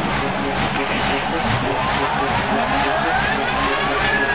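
Psytrance music: a fast, steady beat under gliding synth tones and whooshing noise sweeps.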